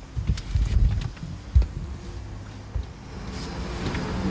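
Low rumble inside the cabin of a Tesla Model S electric car rolling slowly, with a single sharp thump about one and a half seconds in.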